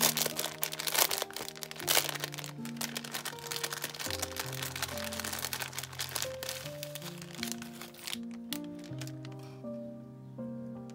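A clear plastic packaging bag crinkling and rustling as it is handled and opened, dense crackles that thin out near the end. Background music of slow held notes plays throughout.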